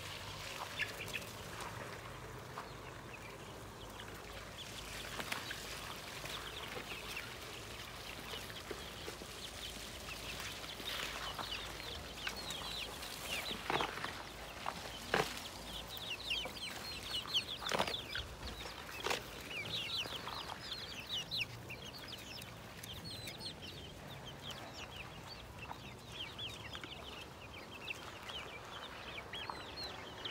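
Chickens clucking in a farmyard, with many quick high-pitched bird chirps that grow denser in the second half. A few louder sharp sounds come about halfway through.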